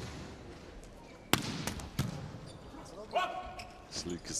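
A volleyball being struck hard during a rally: a sharp smack about a second in, a lighter one just after, and another at about two seconds.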